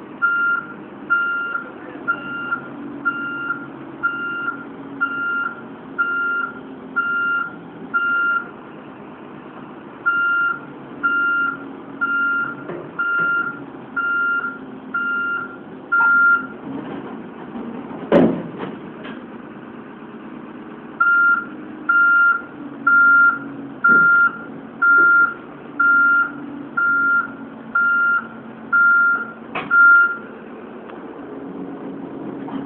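Heavy-equipment warning alarm beeping about once a second in three runs, over a diesel engine running steadily, with one loud metallic clank about 18 seconds in.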